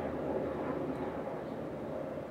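A steady background rumble with no speech, its energy sitting in the low and middle range.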